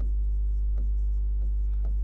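Chalk writing on a chalkboard: short scratching strokes and taps, a few each second, over a steady low hum.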